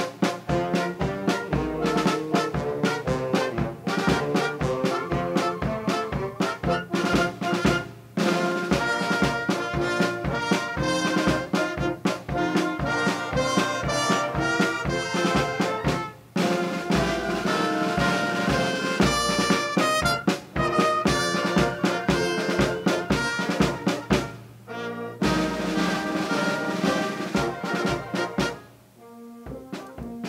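A wind band of brass, saxophones and percussion playing a tune over a steady drum beat. The playing breaks off briefly every eight seconds or so between phrases, and thins out near the end.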